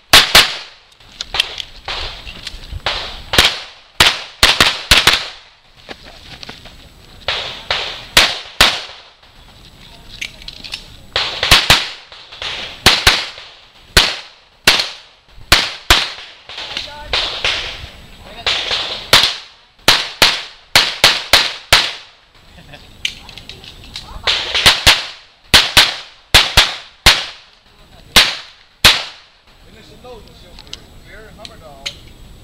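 Semi-automatic pistol fired in quick pairs and short strings of shots, with pauses of a second or two between groups as the shooter moves between targets; each shot is a sharp crack with a short echo.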